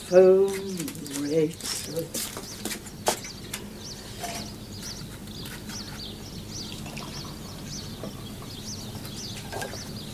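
Small birds chirping faintly and sporadically outdoors. A louder, brief pitched sound falls in pitch during the first second and a half, and there is a single sharp click about three seconds in.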